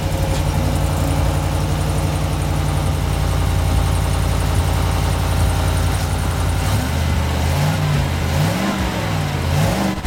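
GMC Sierra AT4's 6.2-liter V8 idling just after a cold start, heard at the stock exhaust outlet, a muffled sound like a four-banger. It runs steadily, then its pitch wavers up and down a few times over the last few seconds.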